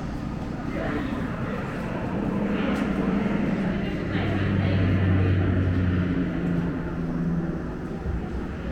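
A low rumbling drone from a museum display's audio-visual soundtrack. It swells to its loudest with a deep steady hum in the middle, and faint voices sound under it.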